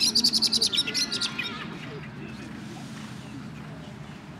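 A small songbird singing a rapid trill of high chirps for about a second and a half, ending in a few falling notes, over a low background murmur.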